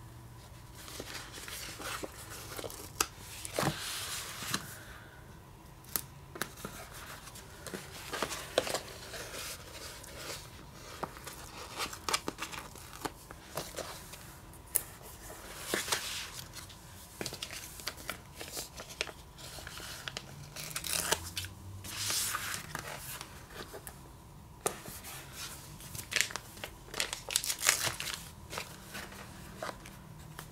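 Paper handling at a craft table: sticker sheets and a paper notebook rustling and crinkling, stickers peeled off their backing and pressed onto the page. Irregular short crackles and taps.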